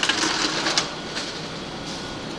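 Steady indoor background noise with a few light clicks scattered through it, and a faint voice trailing off in the first half second.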